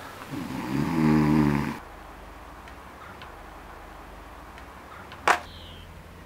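A man snoring: one long, loud snore in the first two seconds. A low hum follows, and a single sharp knock near the end is the loudest sound.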